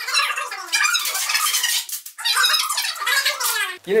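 Duct tape being pulled off the roll with a loud screeching rip, in two long pulls with a short break about halfway, as a layer is wound around a person on a chair.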